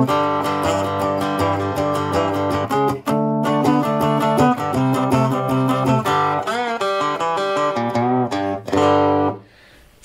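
Amplified three-string cigar box guitar in open G tuning (G-D-G), strummed up and down with a pick through a I-IV-V blues progression. Several notes slide in pitch in the second half, and the playing stops about a second before the end.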